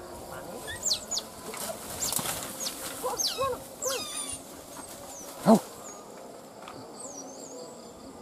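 Otter pup calling from inside its den: a run of short, high chirps that fall quickly in pitch, a few lower arched squeals near the middle, and one short, louder cry about five and a half seconds in.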